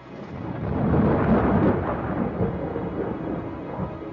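A rolling, noisy rumble that swells over about a second and then holds, between two pieces of music in the soundtrack.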